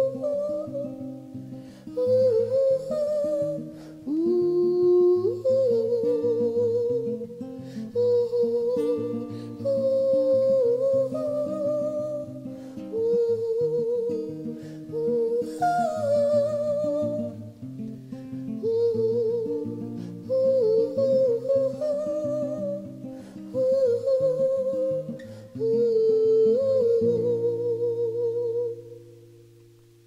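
Wordless hummed vocal melody with a wavering vibrato, in phrases, over strummed acoustic guitar: the closing instrumental-and-humming passage of a song. Near the end it settles on a held chord that fades out.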